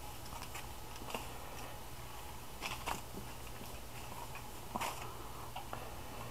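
Hands rubbing dry cure into a pork loin on aluminium foil: faint rustling with a few short crinkles of the foil, over a steady low hum.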